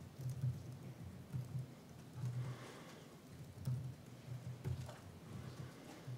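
Typing on a computer keyboard: faint, irregular key taps as a short line of code is entered.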